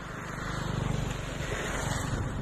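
A motor vehicle going by, its engine and road noise growing louder over the first second and then holding.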